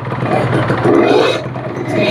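Kawasaki Ninja 150 single-cylinder two-stroke engine idling steadily while its KIPS power-valve setting is adjusted by hand, the idle being tuned to its highest point to find the right valve position.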